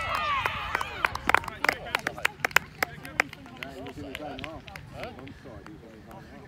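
Sideline spectators cheering a goal just scored: high shouts at the start, then a couple of seconds of scattered hand clapping, with voices chatting under it.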